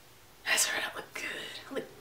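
A woman's whispered, breathy voice: a loud breathy burst about half a second in, then softer breaths.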